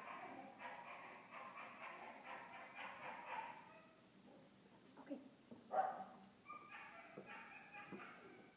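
A young dog whining in high, wavering whimpers for the first few seconds. About six seconds in there is a short, louder yelp, and the whining picks up again near the end.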